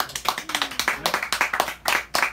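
A small audience clapping at the end of a song, starting suddenly as the last note has died away; the individual claps stay distinct rather than merging into a roar.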